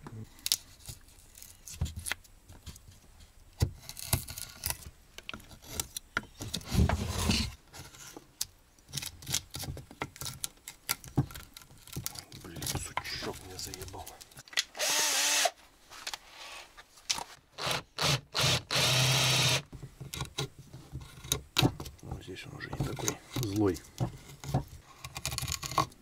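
Hand wood-carving gouge and chisel cutting into a wooden block: a run of short scraping cuts and snapping chips, with two longer strokes of about a second each past the middle.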